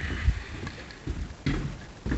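A few dull footsteps on a wooden subfloor, about a second apart.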